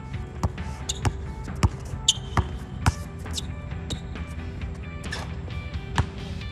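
A basketball being dribbled on an outdoor hard court: about five sharp bounces roughly half a second apart in the first three seconds, then fewer, over background music.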